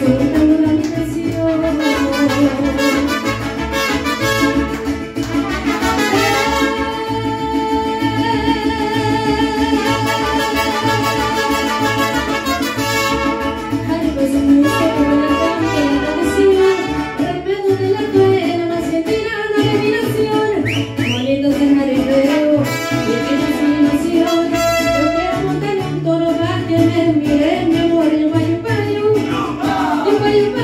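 Live mariachi band playing, with trumpets over strings and a steady, regular bass pulse.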